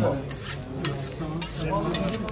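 A long knife being honed on a steel sharpening rod: a few sharp metallic strokes about half a second apart. Under them a vertical gas döner grill sizzles steadily.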